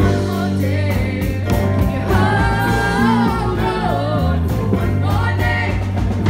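A live rock band playing: several singers singing together in harmony over electric bass guitar and drums.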